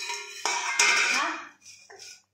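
A stainless steel plate banged by a child against a hard floor, clattering and ringing. There are two knocks within the first second, and the ringing dies away about a second and a half in.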